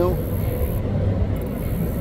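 Steady low hum of a car on the move, road and engine noise.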